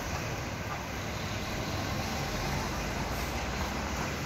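Steady town background noise: a low rumble like distant road traffic, with no distinct calls or knocks standing out.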